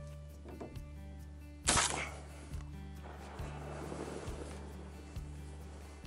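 A single sharp shotgun shot about two seconds in, over background music with a steady beat.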